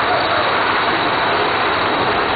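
Big Thunder Mountain Railroad mine-train roller coaster running on its track, a steady rushing noise with no distinct clanks or knocks.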